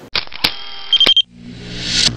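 Electronic logo-sting sound effects: a sudden burst of buzzy, glitchy noise with a few sharp clicks and a short high beeping tone, cutting off about a second in, then a rising whoosh that builds to the end.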